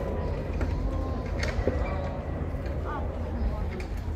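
Faint, distant voices over a steady low rumble.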